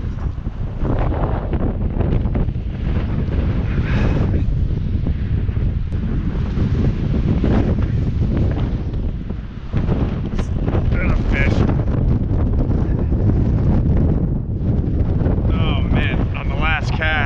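Strong wind buffeting the camera microphone: a continuous heavy low rumble that swells and dips slightly, briefly easing just before the middle.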